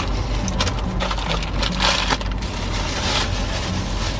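Paper bags crinkling and rustling as they are handled, in a run of irregular crackles, over a steady low hum.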